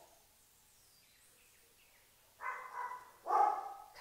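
A dog giving two short, pitched barks close together near the end, after a couple of seconds of near silence.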